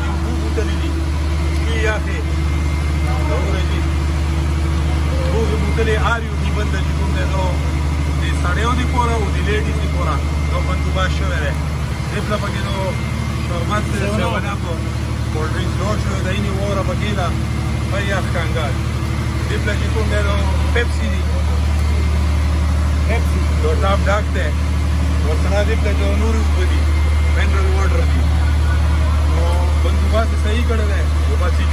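An engine running steadily with a deep, even drone, under the chatter of many voices.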